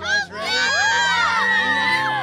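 A group of children shouting and cheering together: a short call, then a long yell of many overlapping voices held for about a second and a half.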